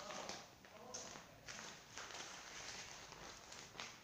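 Faint rustling and crinkling of a resealable plastic bag as it is handled, in irregular crackles.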